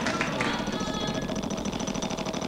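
Game-show prize wheel spinning, its pointer flapper ticking in rapid, even clicks against the wheel's pegs.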